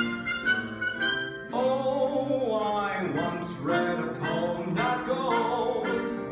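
Live pit orchestra playing a slow musical-theatre song, with sustained notes.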